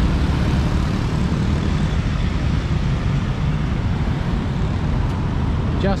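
Road traffic from cars and motorcycles on a busy multi-lane road: a steady, even rumble with no single vehicle standing out.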